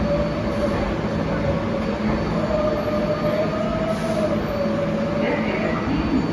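Kawasaki R188 subway train rolling slowly along the platform: a low rumble with a steady, slightly wavering tone running over it.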